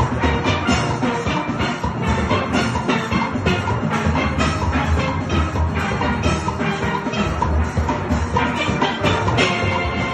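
A steel pan band playing together: many pans struck with mallets in a fast, even rhythm, with bass pans underneath and drums alongside.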